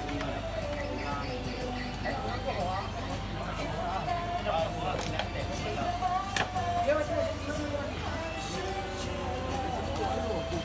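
Background music with a singing voice, over a steady low hum.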